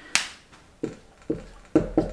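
Marker drawing on a glass whiteboard: one sharp, hissy stroke near the start, then short taps and strokes roughly every half second.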